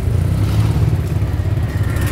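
Steady low rumble of a diesel utility vehicle's engine, heard from its open cab, as motorcycles ride past close alongside.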